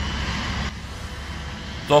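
Low, steady rumble of the Lazanski 8x8 infantry fighting vehicle's 13-litre Caterpillar diesel engine as the vehicle drives away. A hiss over it cuts off suddenly under a second in, leaving the low rumble alone.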